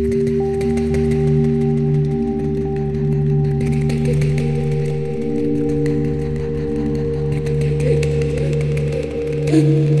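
Experimental electronic drone music from a VCV Rack software modular synthesizer: several steady held tones layered together, with a new higher tone entering about four seconds in. A wavering, wordless voice-like sound joins near the end.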